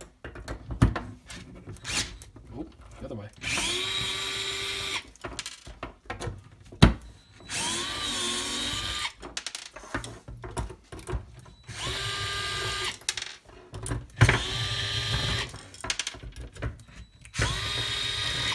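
DeWalt 8V MAX gyroscopic inline screwdriver's small motor running in about five short bursts, each about a second long, rising in pitch as it spins up and then holding steady, as it drives the prop nuts on a racing quadcopter's motors. Short clicks and knocks from handling the tool and props fall between the bursts.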